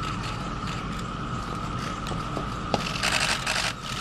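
Outdoor ambience with a steady high-pitched hum, scattered sharp clicks and a short burst of rustling noise near the end.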